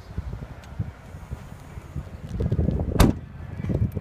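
The rear liftgate of a 2014 Honda CR-V being pulled down and shut: low handling rumble, then one sharp bang about three seconds in as it latches.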